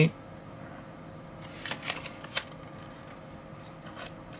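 A folded paper leaflet being handled and turned over, giving a few short, quiet crinkles about one and a half to two and a half seconds in.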